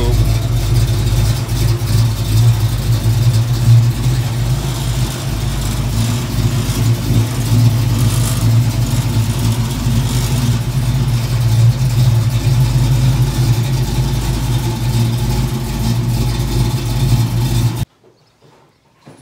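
A 1968 Ford Falcon's 351 Windsor V8 idling with a steady low rumble; the sound cuts off suddenly near the end.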